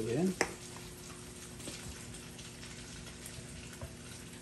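Quiet kitchen background: a steady faint hum under a soft hiss, with one sharp click about half a second in.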